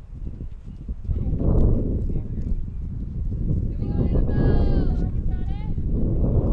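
Wind buffeting the microphone as a steady low rumble, with a high, drawn-out voice calling out across the field about four seconds in.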